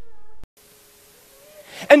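A man's voice trailing off, then an abrupt drop to a faint hiss about half a second in, before his speech starts again near the end.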